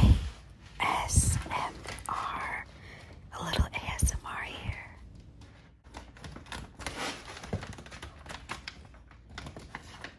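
A voice in the first half, then backing paper being peeled off a sheet of peel-and-stick door wallpaper: an irregular run of small dry crackles and rustles.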